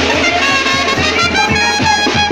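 Banda sinaloense playing live: the brass section holds a loud sustained chord over a steady drum beat.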